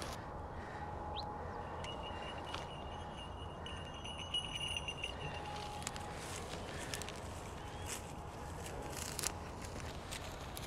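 Open-field ambience: a steady low outdoor noise with faint bird calls, a short chirp about a second in and a thin high call held for a few seconds. In the second half come scattered footsteps crunching through dry stubble.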